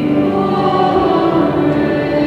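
Church choir singing a hymn with accompaniment, the voices holding long, steady notes.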